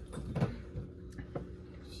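A sip of hot tea from a glass mug, with a couple of soft brief sounds about half a second and about a second and a half in.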